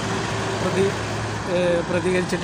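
A man speaking, over a steady low engine hum of road traffic that fades out about one and a half seconds in.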